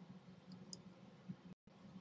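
Near silence: faint room tone with a low hum, two faint short ticks about half a second apart early on, and the sound cutting out completely for an instant about one and a half seconds in.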